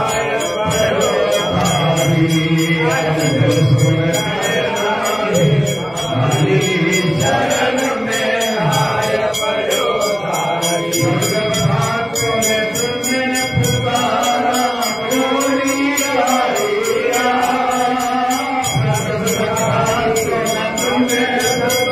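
Hindu mantras being chanted in a continuous sung recitation.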